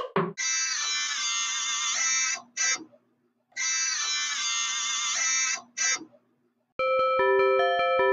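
Electronic music: a bright, many-toned synthesized chord sounds for about two seconds, then a short blip, a brief gap, and the same chord and blip again. Near the end a keyboard melody of clean single notes stepping up and down begins.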